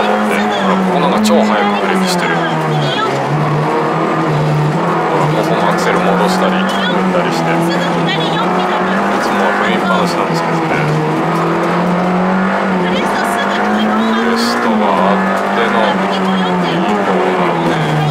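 Honda Integra Type R DC2's four-cylinder VTEC engine heard from inside the cabin, running hard on a gravel rally stage, its pitch dropping and climbing again several times with gear changes and throttle. Sharp ticks of loose gravel hitting the car come through now and then.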